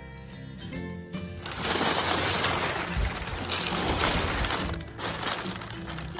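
Crumpled brown kraft packing paper crinkling and rustling as it is handled, loud for about three seconds starting a second and a half in.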